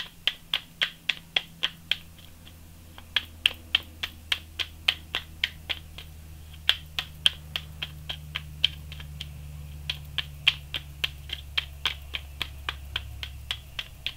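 A tarot deck being shuffled by hand: sharp card slaps, about four a second, in bursts with short pauses, over a low steady hum.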